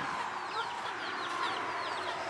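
Baby chicks peeping: a quick run of short, high, falling peeps, several a second, that stops about a second and a half in.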